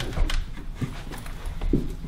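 A person getting up from a chair at a table and walking a few steps across a room: the chair shifts, and there are irregular footfalls and low thuds.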